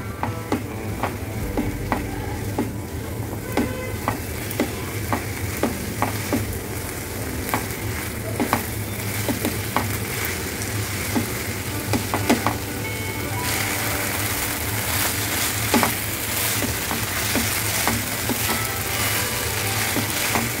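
Shredded chicken and carrot mixture sizzling in a non-stick frying pan as it is stirred with a silicone spatula, with many short scrapes and taps of the spatula on the pan. Chicken stock has just been added to the mix, and the sizzle grows louder and brighter about two-thirds of the way through.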